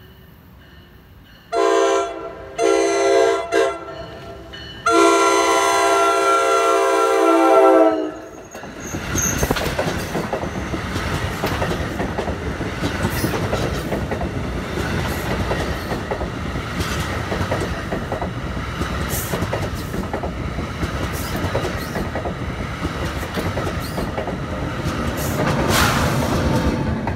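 NJ Transit commuter train sounding its horn for a grade crossing in the long, long, short, long pattern, the last blast held longest. The train then passes close by, its multilevel coaches rumbling with steady wheel clicks over the rail joints.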